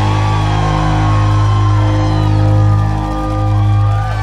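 A live pop band playing the song's instrumental ending, holding a long, steady low chord, with a few shouts from the audience.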